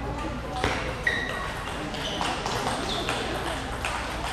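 Celluloid table tennis balls striking paddles and the table: a handful of sharp, irregular clicks, some with a brief high ping, over a steady murmur of voices in a large hall.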